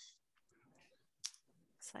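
Near silence on a video-call recording, with one faint, short click about a second in.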